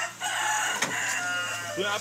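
A rooster crowing once, one long call lasting about a second and a half.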